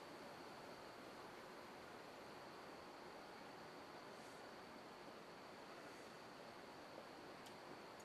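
Near silence: room tone, a steady hiss with a faint high tone running through it.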